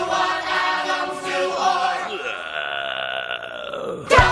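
Musical-theatre ensemble singing from a recorded backing track, with many voices together. About halfway through they settle on a long held chord while lower lines slide downward beneath it.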